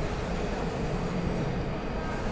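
Steady low mechanical running noise of a large-format printer at work during a print job, with no distinct strokes or changes.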